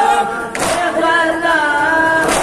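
A group of young men singing a noha, a Shia mourning lament, together into microphones, with one sharp slap about half a second in that fits a matam chest-beat by the mourners.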